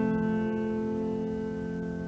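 A piano chord held with its notes ringing and slowly fading, sounding the starting notes for a song.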